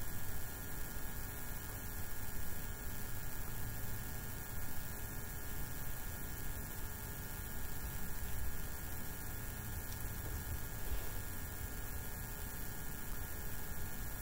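Steady low electrical hum with faint hiss, with no distinct events.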